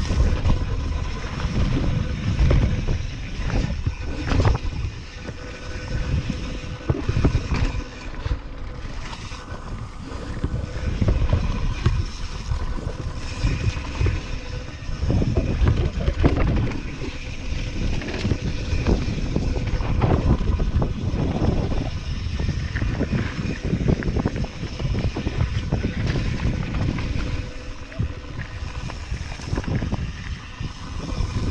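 Santa Cruz Hightower full-suspension mountain bike rolling fast down dirt singletrack: tyres rumbling over the ground with frequent knocks and rattles from the bike over bumps, and wind buffeting the helmet camera's microphone.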